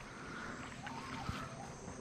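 Faint creek-side bush ambience with soft insect calls and a single light click about a second in.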